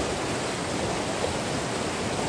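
Shallow river running over rocks: a steady rushing of water.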